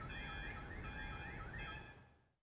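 Car alarm sounding in rapid rising sweeps, about three a second, set off on a car whose roof has just been crushed; it fades out near the end.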